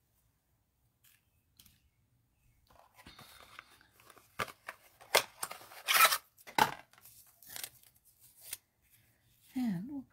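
Small craft scissors snipping the little tabs off a die-cut paper foliage piece: a series of short sharp snips with paper rustling, starting a few seconds in.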